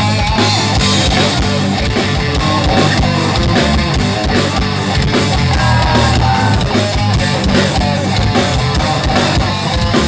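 Live rock band playing loud on electric guitars and drum kit with a steady beat, an instrumental passage with no singing.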